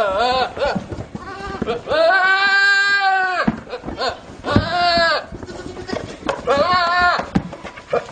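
A small goat screaming: about four loud, long-drawn calls, the longest lasting about a second and a half near the middle, the others shorter.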